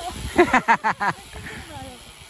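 A person laughing in a quick run of short bursts, over a steady rush of wind on the microphone and tyre noise from riding.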